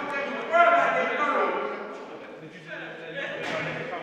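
Men's voices talking and calling out loudly, loudest about half a second in, with a short laugh near the end.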